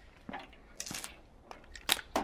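Light handling noises with the drill not running: a soft knock, a short scrape about a second in, and a sharp click near the end as the cordless drill is handled and set down on concrete.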